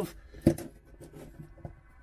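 A small round LED ceiling light fitting being pressed and handled into its hole in a motorhome ceiling. There is one sharp click about half a second in, and a few faint taps after it.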